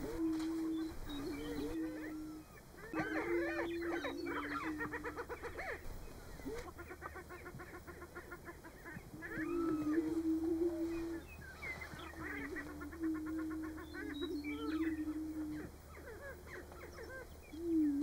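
Greater prairie-chickens on a lek, several males booming at once: low, hollow hooting notes that overlap one another, each lasting a second or two. Bursts of higher, rapidly repeated cackling calls break in twice in the first half, with shorter ones later.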